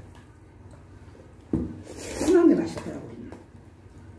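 A short wordless vocal sound from a diner, loudest about halfway through, mixed with the noisy slurping and sucking of someone eating cold noodles.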